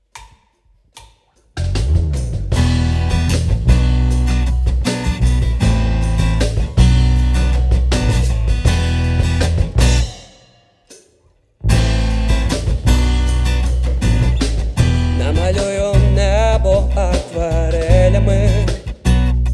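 Live band of bass guitar, drum kit and acoustic guitar playing a song intro, starting after a second and a half of near silence. The band stops dead about ten seconds in and comes back in a second and a half later, with a wavering melody line over it near the end.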